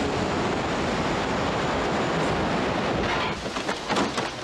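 Rushing river rapids, a steady, loud wash of churning water that drops away about three and a quarter seconds in, with a few sharp knocks near the end.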